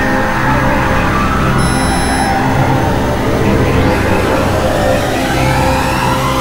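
Experimental electronic noise music: a loud, dense synthesizer drone over a steady low hum, with a brief high whistle about two seconds in and a sweep rising in pitch near the end.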